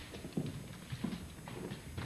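Two faint knocks, less than a second apart, over a quiet background.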